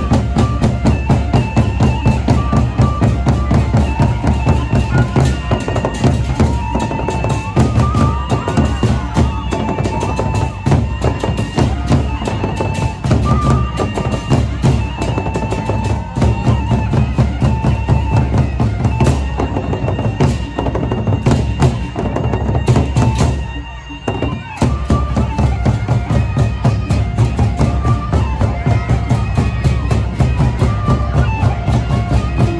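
Sasak gendang beleq ensemble playing: large double-headed barrel drums beaten with sticks in a fast, dense rhythm, under a held, wavering high melody line. The music dips briefly about three quarters of the way through, then picks up again.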